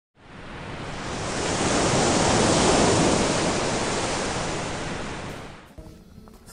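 A long swell of rushing noise that builds for about three seconds and then fades away, like surf or a slow whoosh.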